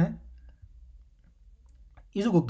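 A spoken word ends just at the start, then a low steady room hum with a few faint clicks of a stylus on a tablet screen as a symbol is drawn by hand.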